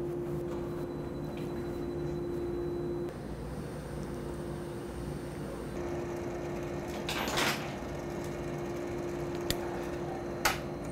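Overhead crane hoist lifting an empty telescope mirror-segment fixture, running with a steady hum that stops about three seconds in and starts again near six seconds. A brief rattle of noise a little after seven seconds and a sharp click near the end.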